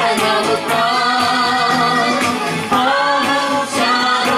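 Congregation singing a hymn together, women's voices prominent, over a steady beat of hand-clapping.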